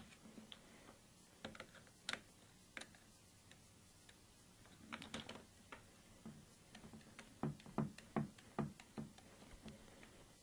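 Faint, scattered clicks and light knocks of a flat-tip screwdriver working the mounting screw of a vertical foregrip clamped onto an AR-15's Picatinny rail, with a quicker run of clicks in the second half as the screw is tightened.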